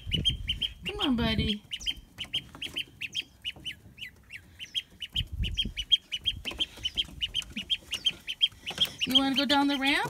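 A lone domestic duckling peeping over and over, short high peeps several a second. These are the calls of a duckling separated from its brood.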